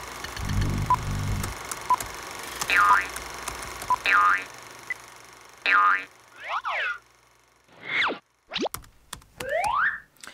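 Animated logo intro built from cartoon sound effects: a low thud about half a second in, soft ticks about once a second, then a run of springy boings that swoop down and back up in pitch, ending in a quick rising glide.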